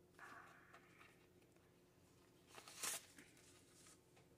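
Quiet handling of paper banknotes and a cash binder's divider page: a soft rustle at the start and a brief, louder rustle near the end.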